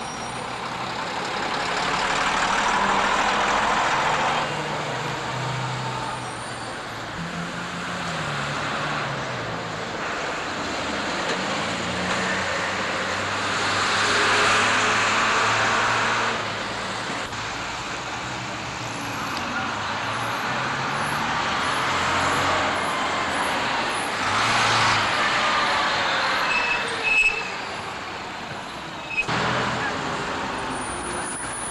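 Street traffic with diesel buses and a lorry passing close by, each swelling and fading as it goes past. An engine's pitch rises and falls as it changes speed partway through. A short sharp knock comes near the end.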